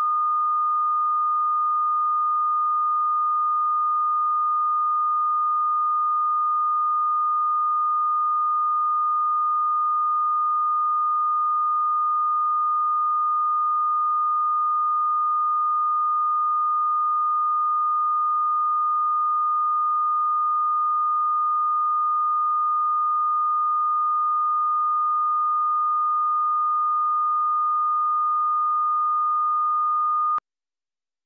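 Broadcast line-up reference tone played with colour bars: one continuous pure tone at a fixed mid-high pitch and constant level, used for calibrating audio levels at the head of a tape.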